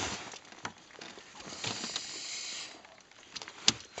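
Rustling and scattered knocks as a freshly caught trout is gripped and handled on a boat deck, with a stretch of steady rustling in the middle and one sharp knock near the end.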